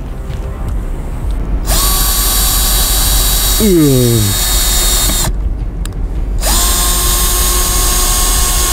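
Cordless drill boring into the tread of a run-flat car tyre to puncture it, running in two steady high-pitched whining runs: the first starts about two seconds in and lasts about three and a half seconds, and the second starts about six and a half seconds in.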